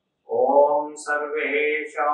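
A man chanting a Sanskrit mantra on a steady, held pitch, beginning about a quarter second in after silence, with a few consonants breaking the long sung vowels.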